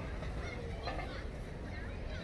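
Outdoor background: a steady low rumble of wind on the microphone, with faint distant voices and a few faint high chirps.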